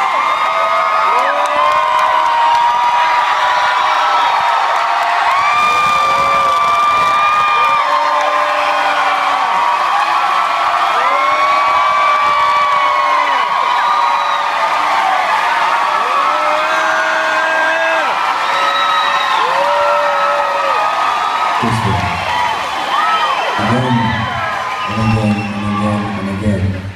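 Concert crowd cheering and whooping between songs, many voices holding long shouts at different pitches. A low rumble joins about four seconds before the end.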